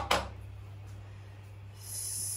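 Quiet kitchen sounds over a steady low hum: a brief sharp handling noise right at the start, then a soft hiss near the end.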